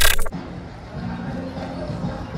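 A loud digital glitch sound effect that cuts off abruptly about a third of a second in, followed by a quieter, steady background sound.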